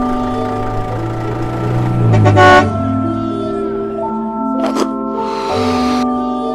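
Truck sound effect: a low engine rumble that builds, then a short, loud horn toot about two and a half seconds in. It plays over light mallet-percussion music of held tones.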